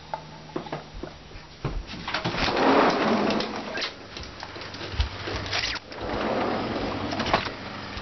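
Handling noise from a handheld camera being carried: rustling, then a few sharp knocks.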